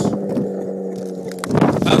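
Snowmobile engine running at a steady low speed with an even hum. About one and a half seconds in, wind noise buffets the microphone.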